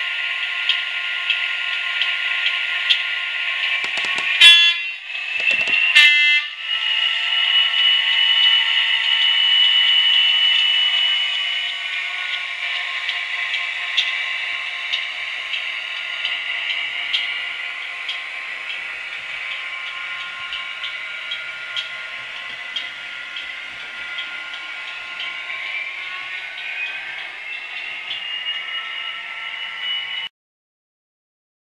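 Digital Class 67 diesel sound from the DCC sound decoder of an OO-gauge Hornby model, played through its small speaker. It imitates the locomotive's EMD two-stroke engine running, with two short horn blasts about four and six seconds in. The engine note then rises, falls back and rises again near the end as the model is driven, with light regular clicks throughout.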